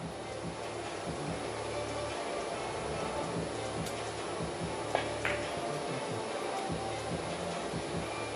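Carom billiards shot: a single sharp click of the cue tip striking the ball about five seconds in, then a brief ringing click of balls meeting, over a steady low hall hum.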